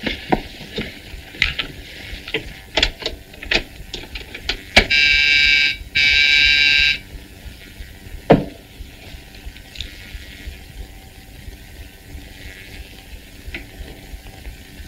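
An electric buzzer sounds twice, two steady buzzes of about a second each with a short gap, a call coming in on the hidden earphone-and-microphone set. Before it come scattered soft knocks and rustles of handling.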